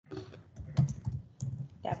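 Typing on a computer keyboard: a few scattered keystroke clicks.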